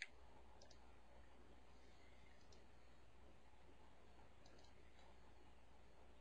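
Near silence over a low steady hum, with one computer mouse click right at the start and a few much fainter clicks later.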